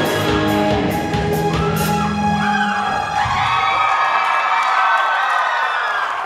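Live rock band playing through a PA with drums, the drumming stopping about two seconds in and leaving held chords ringing out. A crowd cheers and whoops over the end of the song.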